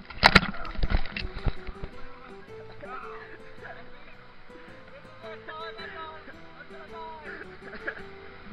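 Surf and splashing water hitting the camera's microphone for about the first second and a half, then a quieter stretch of background music with steady held notes.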